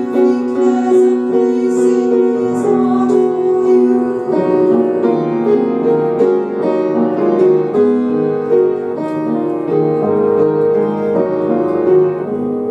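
A woman singing a slow musical-theatre ballad into a microphone, holding long notes, over a piano accompaniment.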